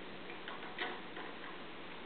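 A crawling baby's hands and knees tapping on a foam play mat: a few soft, irregular taps, the clearest one a little under a second in.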